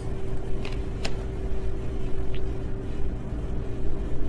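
Steady low background rumble with a faint steady hum above it and two or three light clicks.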